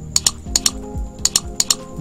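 Computer keyboard keystrokes: about eight sharp clicks, mostly in quick pairs, over a low steady background tone.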